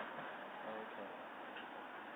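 A quiet pause: faint room tone and recording hiss between stretches of talk.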